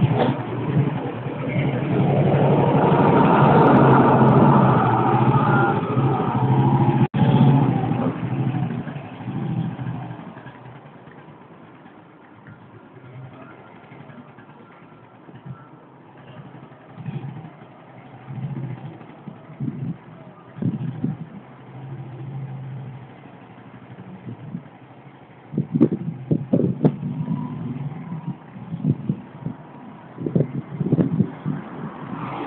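1957 BSA N21 600cc motorcycle engine revving up and pulling away, loud for the first several seconds, then dying down as the bike rides off, leaving a quieter rumble of street traffic. A few sharp thumps sound near the end.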